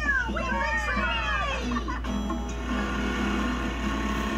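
Children's video trailer soundtrack played through a television speaker in a small room. For the first two seconds voices slide up and down in pitch over music, then the music carries on with steady held notes.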